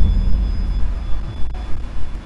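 A deep low rumble, loud at first and slowly dying away, with a faint high ringing tone fading above it: the tail of a heavy impact just before.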